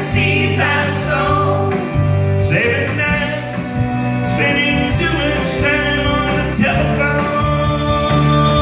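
Karaoke: a man sings into a handheld microphone over a country-rock backing track.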